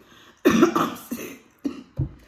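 A woman coughing and clearing her throat: one strong cough about half a second in, then a few shorter ones.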